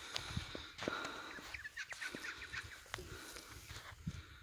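Bare-nosed wombat cropping and chewing grass close by: a scatter of short, crisp tearing and crunching clicks, with a quick run of high little clicks around the middle.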